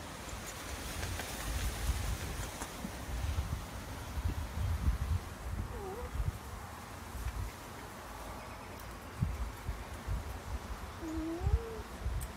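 A Siamese cat gives two soft, short meows that bend in pitch, one about six seconds in and one rising near the end. Under them runs a low rumble of handling noise as the cat rubs against the phone's microphone.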